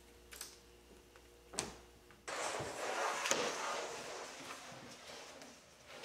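Hands handling a bent-laminated wooden leg on a hardboard template: two light knocks, then a couple of seconds of rustling scrape with one sharp click, fading away.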